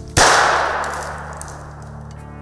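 A single sharp, loud bang about a quarter-second in, dying away in a ringing tail over about a second and a half.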